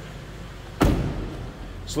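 A car door shut with a single solid slam about a second in, over the steady idle of the 2009 Pontiac G6 GXP's 3.6-litre V6.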